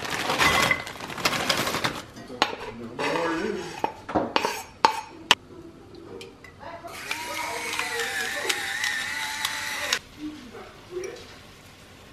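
Cooking sounds from a pot on the stove: clinks and knocks of utensils and ingredients against an enamelled pot, then a steady hiss lasting about three seconds, starting about seven seconds in.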